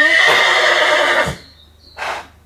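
A stallion neighing once, loud, for about a second and a half before cutting off. It is a stallion's call to locate the other horses, set off by his excitement at the neighbour's horse being turned out nearby.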